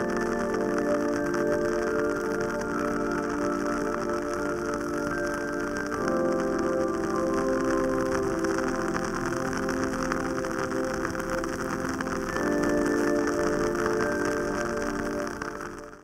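Wooden candle wick crackling steadily with a dense run of small ticks and pops, like light rain, as it burns in a jar of scented wax. Soft ambient music with long held chords plays underneath, the chords changing about six seconds in and again around twelve seconds.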